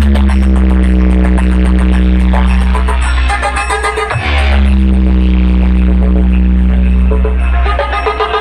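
Bass-heavy electronic dance music played very loud through a large DJ speaker stack. Long held bass notes fill the low end, and a new one comes in about every four seconds.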